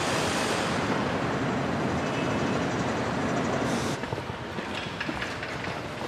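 Street traffic noise as a box truck drives past, a steady rushing road sound that eases off about four seconds in.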